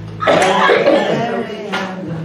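A man's loud, wordless vocal outburst into a stage microphone, cough-like at its abrupt start about a quarter second in, then running on as voice, with no band playing.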